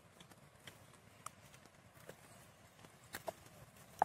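Faint footsteps on a dirt and cobbled path: a few scattered, uneven clicks and knocks of shoes over near silence.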